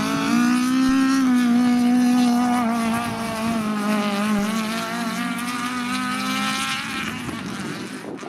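Race car engines running hard at high revs, a steady drone that wavers slightly in pitch and fades as the cars move away near the end.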